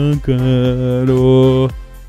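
A man singing a football supporters' chant, stretching one word into a long held note for about a second and a half, with a small step in pitch midway.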